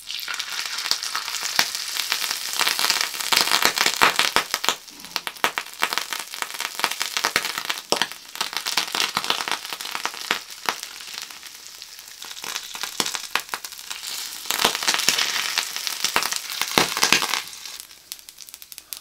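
Hot cooking oil at about 200 °C poured from a kettle onto the scored skin of a pig's head, sizzling and crackling with many sharp pops as the skin fries. It is busiest a few seconds in and again near the end, thinning out in between.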